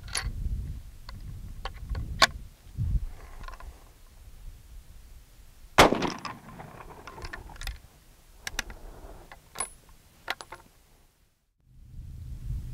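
A single loud rifle shot from a Trapdoor Springfield rebarrelled for .30-40 Krag, about six seconds in, with a short echo. Before it come sharp metallic clicks as the single-shot trapdoor breech is worked and loaded, and after it a few more clicks from the action.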